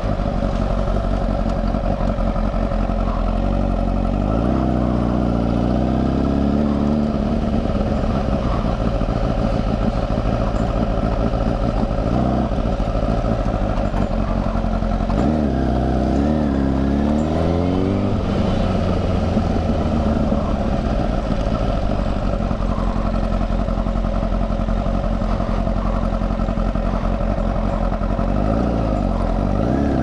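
A motorcycle engine running steadily while riding. Its pitch swings up and down three times, about 5 s in, around 16 s and near the end, as the revs change.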